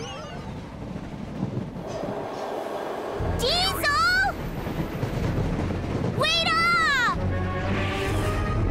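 Cartoon soundtrack: background music with a low rumble that comes in about three seconds in. Over it come two short, high-pitched vocal exclamations from the animated characters, one near the middle and one about six seconds in.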